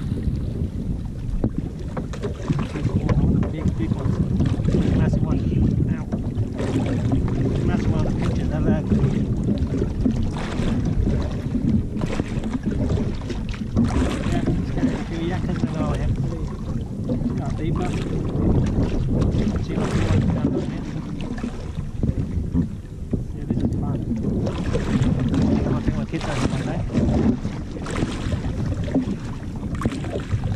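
Wind buffeting the microphone on a jet ski at sea: a continuous low rumble that surges and eases in gusts, with the sea washing around the hull.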